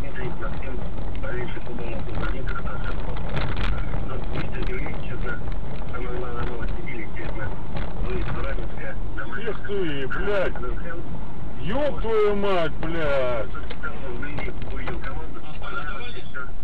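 Steady road and engine noise inside a moving car. Voices break in with bending, rising and falling pitch between about ten and thirteen seconds in.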